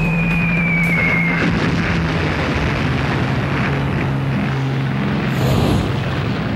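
Falling-bomb whistle: a single high tone sliding slowly downward and fading about a second and a half in, over a steady low drone and dense rumble.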